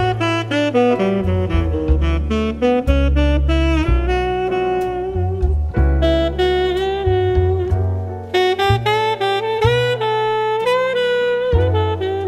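Instrumental jazz from a quartet: a lead melody line moving over low bass notes.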